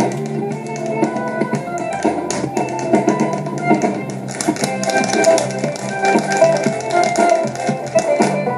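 Irish dance music with the rapid clicking taps of hard shoes on a stage floor; the taps grow denser and louder about halfway through.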